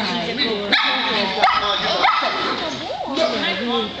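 A Shetland sheepdog yipping and barking repeatedly in short calls while people talk, with two sharp clicks in the first second and a half.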